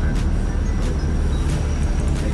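Steady low engine rumble and road noise heard from inside the cabin of an old van while it is being driven.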